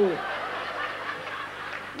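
Audience laughing, a diffuse crowd laugh that softens a little toward the end.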